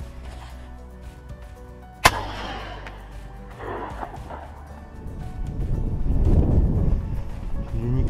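A single 12-gauge shotgun shot from a Beretta Silver Pigeon over-and-under, a sharp crack about two seconds in with a short ringing tail, fired at a blackbird. Background music plays throughout, and a low rumbling noise builds over the last few seconds.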